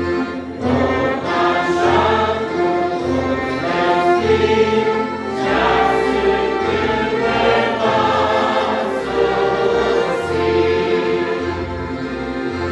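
A hymn sung by voices over a small band of accordions, trumpet, clarinet, electronic keyboard and acoustic guitar, with keyboard bass notes pulsing underneath in a steady beat.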